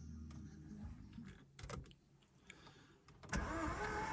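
A few faint clicks, then about three seconds in the starter motor begins cranking the Škoda Octavia's engine, which spins over steadily and quite freely without catching. This is a sign that the engine has no compression, which the owner suspects comes from a jumped or broken timing chain or a broken camshaft.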